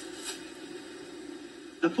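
Film soundtrack playing through a television speaker in a quiet stretch between lines: a low steady hum with faint hiss. A man's voice starts near the end.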